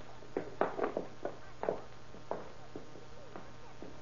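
Footsteps on a hallway floor, a radio-drama sound effect, heard as about seven uneven steps over an old recording's low hum.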